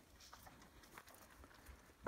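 Near silence, with a few faint scattered rustles and ticks as the ewe and her newborn lambs shift in the straw bedding.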